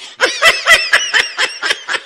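High-pitched laughter: a person giggling in quick bursts of about four or five a second, loudest near the start and tailing off.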